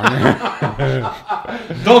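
A man chuckling amid conversational speech.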